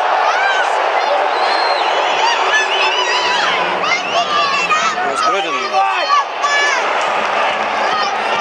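Overlapping shouts and chatter from a small football crowd, many of the voices high, with no cheer or single loud event standing out.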